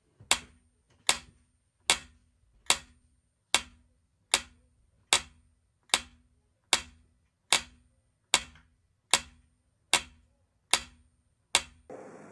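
Metronome-style click beat: fifteen identical sharp clicks, evenly spaced at a little over one per second, each with a short ring.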